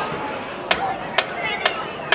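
A band's count-off of sharp stick clicks, three about half a second apart, over faint crowd chatter, just before the band comes in.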